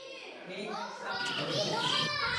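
A crowd of children's voices chattering and calling over one another, fading in and growing louder through the two seconds.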